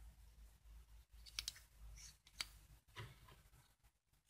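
Near silence broken by a few faint clicks and taps as a stick is worked in a small tin of paste soldering flux and its plastic lid is handled.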